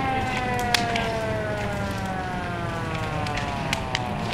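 A fire apparatus siren winding down, one long tone with its pitch falling slowly and steadily. A few sharp cracks are heard over it, the loudest about a second in.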